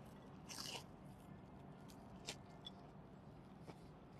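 A faint bite into a piece of food held in the fingers, about half a second in, then quiet closed-mouth chewing with a small click later on. Otherwise near silence.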